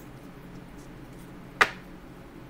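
A single short, sharp click about a second and a half in, over a faint steady low hum.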